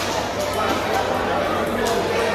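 Background chatter of many voices in a large hall, with one sharp click of a table tennis ball being struck near the end.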